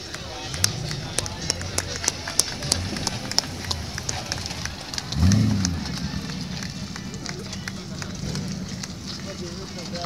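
Footsteps on gritty asphalt, about two a second, over a car engine running nearby. About five seconds in, the engine is revved once, its pitch rising and falling; this is the loudest sound.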